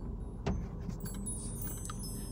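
A light metallic jingle of small metal objects starting about a second in, after a single click, over the steady low hum of a car cabin.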